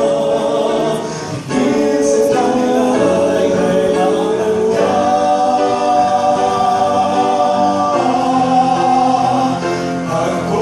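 Male vocal quartet singing a gospel song in close harmony through microphones, with a short break between phrases about a second and a half in and a long held chord in the middle.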